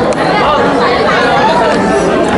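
Overlapping chatter: several people talking at once around the tables.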